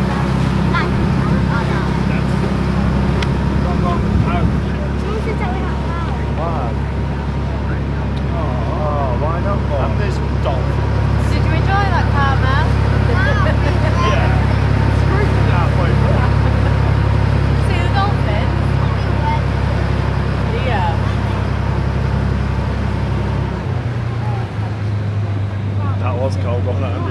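Speedboat engine running steadily at low harbour speed, a constant low drone; about two seconds before the end the engine note drops as the throttle changes.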